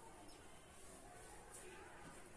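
Near silence: faint room tone, with a soft rustle of a cotton garment being handled and folded.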